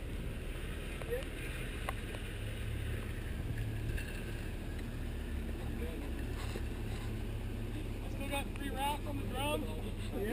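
Off-road pickup truck's engine running at idle, a steady low rumble, with the winch cable strung out but not yet pulling.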